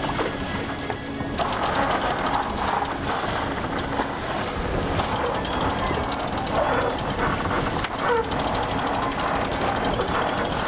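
Wind buffeting the microphone and water rushing past the hull of a sailing yacht under way, with a fast, irregular crackling rattle throughout.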